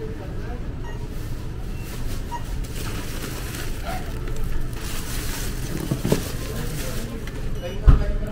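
Thin plastic carrier bags rustling as groceries are lifted and handled, over a steady low rumble, with a sharp thump near the end.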